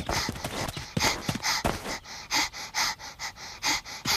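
A young child's voice panting in quick breaths, about three a second, out of breath from running.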